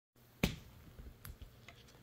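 Wooden toy pieces knocking and clicking: one sharp knock about half a second in, then a few lighter clicks as the pieces of a wooden shape-sorter toy are handled.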